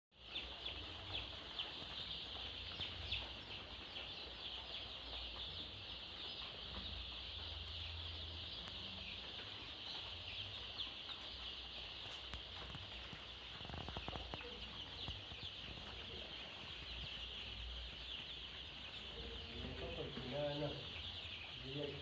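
A flock of Kienyeji chickens calling together: a dense, steady, high-pitched chorus of many overlapping calls, with a low rumble underneath.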